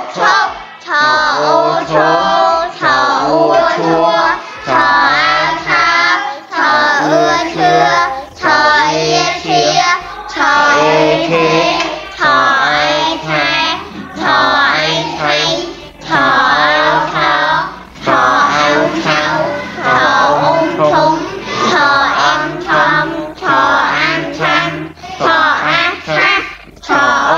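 Children's voices singing short syllables one after another in a steady stream, over backing music.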